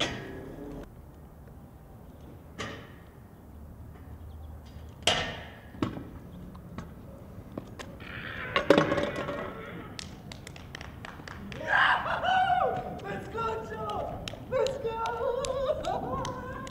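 Freestyle scooter knocking and clattering against a metal rail and the pavement in a few separate impacts over the first nine seconds. From about eight seconds in, onlookers shout and cheer as the trick is landed.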